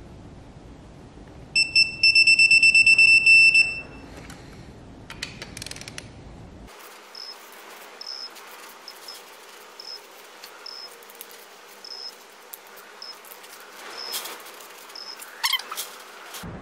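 Digital torque wrench giving a loud, rapidly pulsing high beep for about two seconds, the signal that a cylinder head bolt has reached its set torque of 60 N·m. A few clicks follow, then faint short high chirps repeat every second or so.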